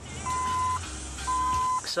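The 1999 Ford Laser's dashboard warning chime beeping twice: two steady, high, half-second tones about a second apart.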